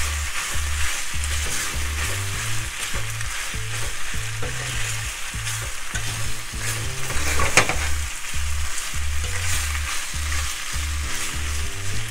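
Penne and vegetables sizzling in oil in a pan as they are sautéed together, with a spatula stirring and scraping through them.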